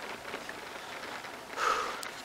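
A cyclist's short, hard breath out about one and a half seconds in, from the effort of a long climb, over a faint steady hiss of wind and tyres on a lane.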